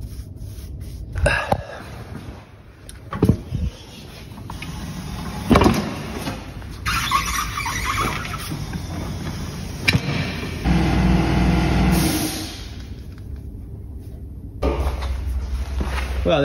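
Tyre-fitting sounds as wet tyres go onto spare wheels on a tyre changing machine: a run of knocks and clunks, squeals of rubber tyre bead rubbing on the rim, and a machine running for about two seconds a little past the middle.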